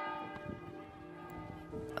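Church bells ringing, several tones overlapping and hanging in the air as they slowly fade.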